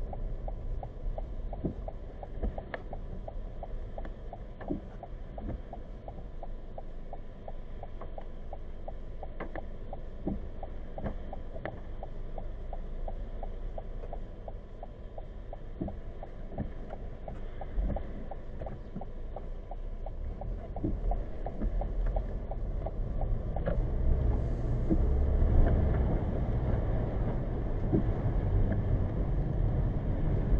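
Road and engine noise inside the cabin of a 2020 Toyota Corolla, heard through the dashcam's microphone: a steady low rumble with faint clicks about once a second, growing louder near the end as the car drives off.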